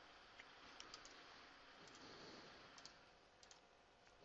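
Faint computer mouse clicks, several in quick pairs, over the low hiss of near-silent room tone.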